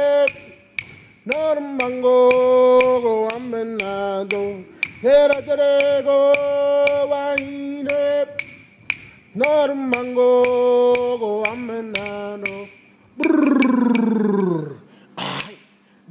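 A man chanting a song in an Aboriginal language in long held notes, each phrase swooping up at its start and dropping away at its end, over a steady beat of sharp taps about twice a second. Near the end the voice slides down in one long falling call.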